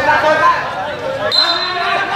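Men's voices talking and shouting over one another.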